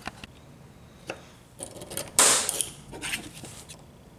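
Tools and small metal and wooden objects being handled on a workbench: a few light clicks and knocks, with a short, louder scraping rustle just past the middle.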